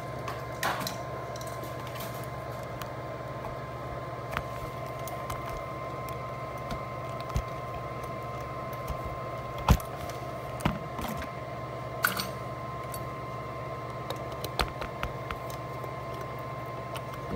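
Scattered clicks and knocks of test equipment and leads being handled on a repair bench, over a steady low hum and a faint, thin, steady high tone. The loudest knock comes about ten seconds in.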